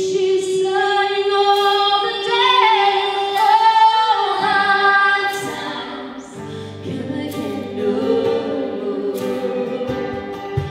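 Two women singing a traditional British folk song in harmony, holding long notes, over strummed acoustic guitar and fiddle.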